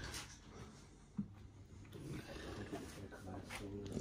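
Quiet workshop room tone with a single sharp click about a second in, followed by faint low murmuring.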